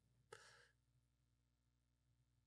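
Near silence, broken by one faint, short breath out through the nose or mouth, a quiet sigh, about a third of a second in; then only low room hum.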